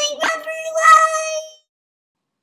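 A high-pitched child's singing voice holding one steady note, briefly broken and taken up again just after the start, fading out about one and a half seconds in.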